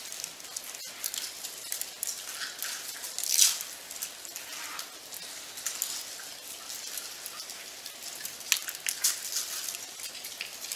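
Scattered faint crackling and rustling from a quietly seated congregation as the communion bread is passed and broken, with a louder rustle about three and a half seconds in and a few sharp clicks near the end.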